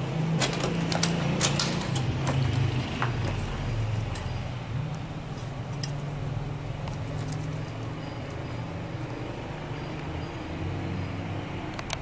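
A low, wavering engine-like hum throughout, with sharp clicks and crunches in the first three seconds and a few scattered ones later.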